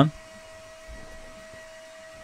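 Cooling fans of a freshly powered-on Edgecore AS5712 network switch running steadily, a constant hum with one held mid-pitched tone.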